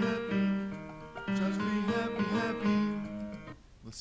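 Multi-part choral arrangement playing back from GarageBand: several sustained notes layered into chords, moving from one chord to the next. The playback stops about three and a half seconds in.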